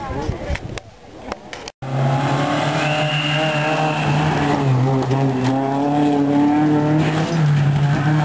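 Rally car engine running loud at high revs, starting abruptly about two seconds in; its note holds steady but steps down and back up a few times.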